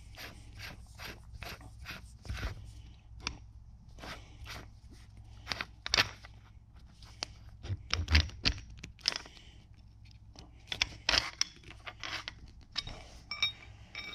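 Threaded metal barrel nut of a .22 LR semi-auto rifle being unscrewed by hand: irregular small clicks and scrapes of metal on metal and of fingers on the parts, over a low steady hum.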